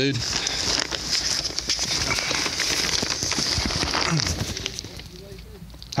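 A person crawling on their belly across a crawl space's dirt floor strewn with brick debris, body and phone scraping and crackling over the dirt and grit. The scuffing is steady and busy at first, then quieter after about four and a half seconds.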